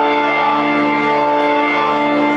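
Live rock band music: an electric organ holds a steady sustained chord over bass guitar.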